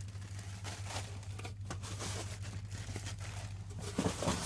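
Clear plastic packing material crinkling and rustling in irregular bursts as it is handled and pulled from a shipping box.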